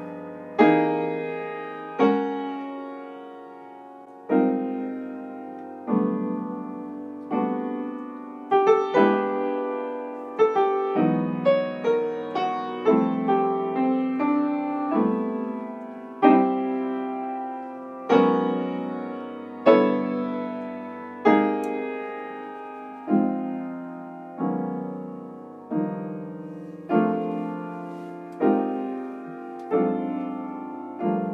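Upright acoustic piano played solo: a slow progression of full chords, each struck and left to ring and fade before the next, about one every one and a half to two seconds, with quicker chord changes between about eight and fifteen seconds in.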